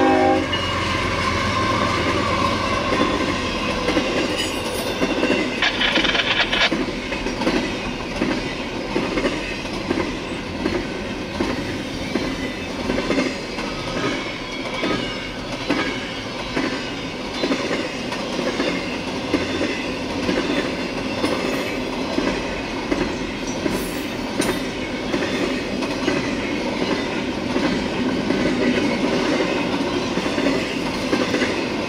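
Double-stack intermodal freight train passing a grade crossing at speed: a steady rumble of wheels clacking over the rail joints. Its horn chord cuts off right at the start, and there is a short high squeal about six seconds in.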